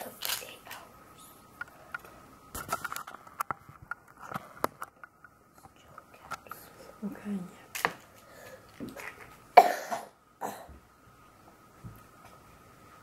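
Scattered small clicks and handling sounds with a few soft vocal sounds, and one short loud burst of noise a little before ten seconds in, over a faint steady high tone.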